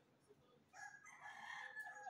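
One faint, pitched animal call lasting about a second and a half, starting just under a second in.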